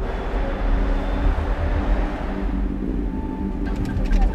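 City tram passing in street traffic: a steady low rumble with a hiss that is strongest at first and fades over about three seconds, under a low music drone.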